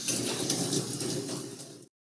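Hot water running hard from a faucet into an empty stainless steel sink compartment, a steady rushing splash that cuts off suddenly near the end.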